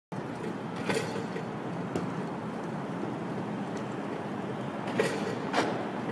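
City street noise: a steady background of traffic and urban hum, with a few sharp knocks, about one and two seconds in and two louder ones near the end.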